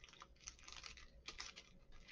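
Near silence with faint, irregular small clicks coming in short runs.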